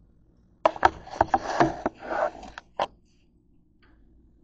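Handling noise as the camera is picked up and moved: about two seconds of knocks, clicks and scraping rubs, ending with one sharp knock.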